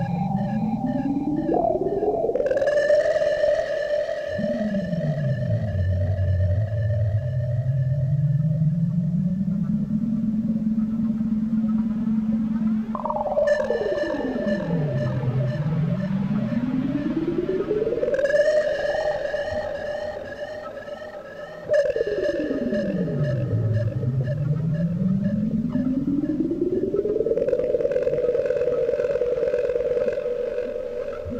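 Ambient synthesizer music: a stacked saw-like synth tone from a Kawai K5000s sweeps down in pitch and ramps slowly back up to a held high note, about four times, with a shimmering layer of upper tones above it. The sound fades a little about two-thirds of the way through, then cuts back in suddenly.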